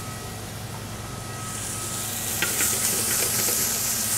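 Asparagus and onions sizzling in butter and olive oil in a pan on high heat, the sizzle growing louder partway through, with a few light clicks after the middle.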